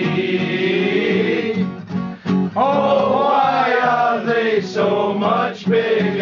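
Several men singing together to a strummed acoustic guitar.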